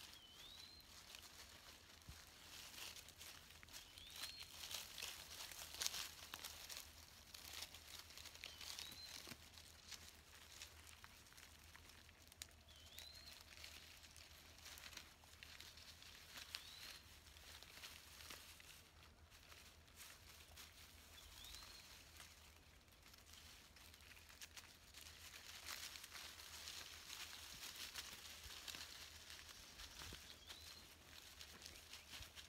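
Faint rustling and crackling of dry leaf litter as armadillos root through it, with a bird's short rising call repeating about every four seconds.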